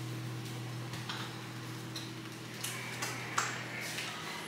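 Faint crinkling and a few small clicks from a plastic zip-top bag of vegetables being pressed and handled as it is worked shut, over a steady low hum.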